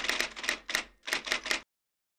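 Typewriter keystroke sound effect: a run of sharp, unevenly spaced clacks that ends about one and a half seconds in.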